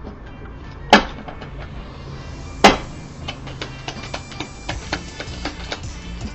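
Two sharp knocks, the first about a second in and the second about a second and a half later, over background music that runs on with small ticks.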